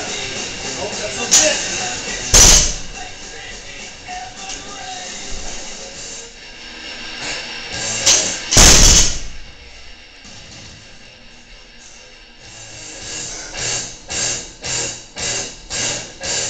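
185 lb barbell loaded with rubber bumper plates, dropped from the shoulders onto a rubber gym floor twice, about two and a half seconds in and again about eight and a half seconds in, each a sudden loud crash, over background music.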